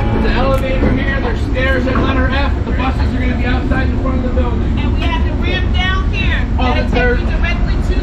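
Voices of people talking as passengers leave a train onto a station platform, over the steady low rumble of a train standing at the platform.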